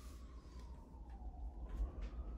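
A faint siren wail, one pitch falling slowly and then rising again, over a low steady hum.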